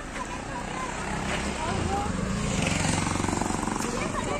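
A bus engine running close by, a low steady rumble that grows a little louder about halfway through, with faint voices over it.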